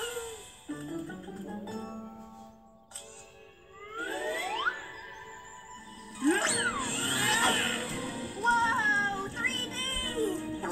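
Children's cartoon soundtrack playing from a TV. A held low note fades out, rising whistle-like slides come in about four seconds in, and louder music with sweeping slides starts about six seconds in.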